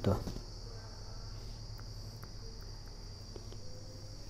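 Steady high-pitched chirring of crickets in the background, with a faint low hum underneath.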